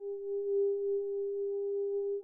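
Mutable Instruments modular synthesizer holding one steady, pure tone with a faint octave above it, its loudness gently swelling and dipping.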